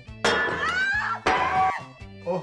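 A porcelain plate smashing: two sudden crashes about a second apart, over background music with rising tones.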